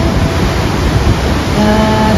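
Kjosfossen waterfall roaring with a loud, steady rush of crashing water. A held sung note comes in near the end.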